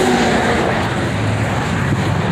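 Freeway traffic passing close by: a loud, steady rush of tyres and engines.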